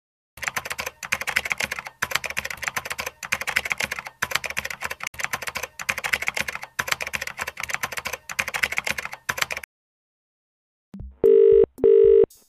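Rapid keyboard typing: dense clicking in runs of a second or two with brief pauses between them. Near the end, two short telephone tone beeps.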